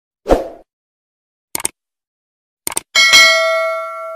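Subscribe-button animation sound effects: a soft thump, then two quick double mouse clicks about a second apart, then a bell ding at about three seconds that rings out and fades.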